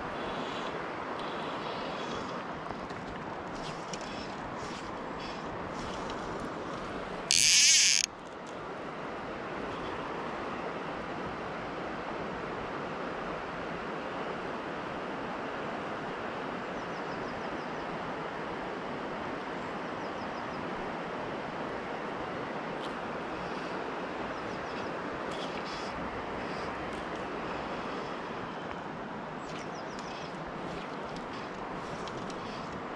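Steady rush of river water and breeze around a wading angler, with faint bird chirps scattered through it. A brief loud hiss cuts in and out just after seven seconds.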